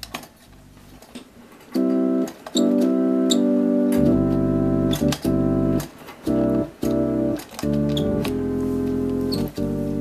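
Hammond S4 chord organ sounding sustained chords from its chord buttons, about six chords in turn starting near two seconds in, with short clicks from the buttons between them. From about four seconds in a deep bass-pedal note sounds under the chords.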